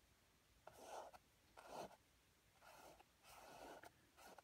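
Faint strokes of a flat brush dragging thick oil paint across canvas: four short scrubbing strokes, roughly a second apart.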